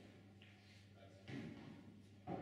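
Near silence: quiet hall room tone with a low hum and faint distant voices, and one brief, slightly louder sound just past the middle.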